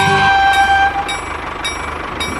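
Battery-operated toy train: a held horn-like tone that fades out about a second in, followed by a steady hissing running sound with faint clicks.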